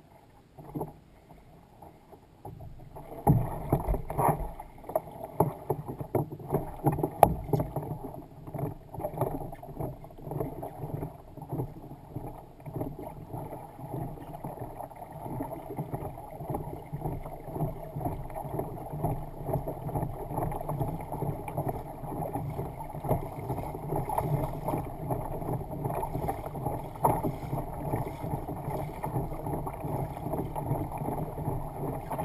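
Water washing and splashing along the hull of a fishing kayak under way, starting about three seconds in and running on steadily, with many small irregular knocks.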